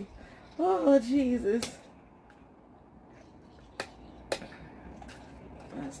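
A wordless, wavering vocal sound from a person, about a second long, followed by three or four sharp clicks spaced a second or so apart.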